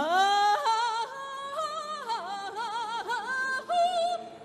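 A woman singing solo in Vietnamese folk style: she slides up into a long held note at the start, then sings phrases full of quick wavering ornaments and pitch turns.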